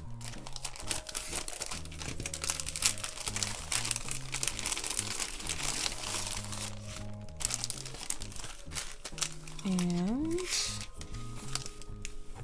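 Iridescent cellophane bag crinkling continuously as it is handled, opened and its contents pulled out.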